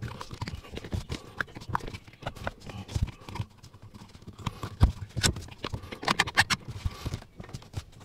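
Irregular clicks and knocks of a metal pedal cover with a rubber rim being pushed and worked onto a car's brake pedal by hand, the pedal and cover knocking as it is pressed home.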